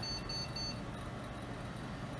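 A few short high-pitched beeps from a PC's internal speaker in the first second as an Asus A8N-SLI motherboard runs its power-on self-test, then only a faint steady hum.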